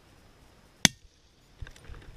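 A single rifle shot, one sharp crack a little under a second in, followed by a few faint clicks.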